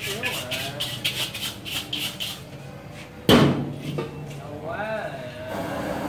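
Carbon-steel wok being washed and handled: a quick run of scrubbing strokes, about four a second. About three seconds in, one loud metal clang with a short low ring as the wok is set down on the burner. Near the end, a steady rushing noise of the gas jet burner (bếp khò) sets in.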